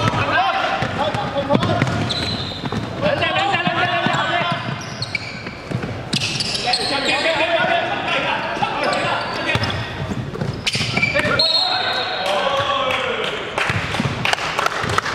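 A basketball bouncing on a wooden gym floor during a game, with players' voices calling out across the hall.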